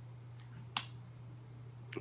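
A single sharp click about three-quarters of a second in, over a steady low hum.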